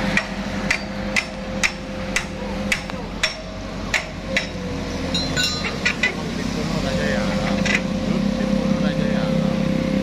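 A run of sharp metallic knocks, about two a second for the first few seconds and then sparser, over the steady running of a truck-mounted crane's engine. The engine grows louder near the end as the cement mixer is lifted.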